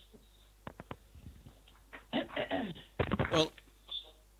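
Voices over a Skype call, sounding bad: a few brief clicks, then a short unclear phrase about two seconds in and a spoken "Well" near the end.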